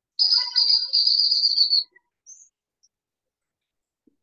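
A high, bird-like call: one loud, fluttering note lasting about a second and a half.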